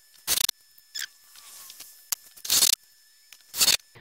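Cordless DeWalt drill driving screws into the chimney boot's flange on a metal roof, in three short bursts.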